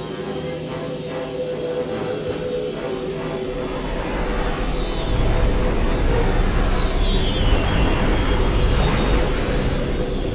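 Sci-fi starfighter engine sound effects: a dense engine rumble that grows heavier about halfway through, with falling whines as fighters pass, around four and again around seven seconds in, over a sustained musical tone.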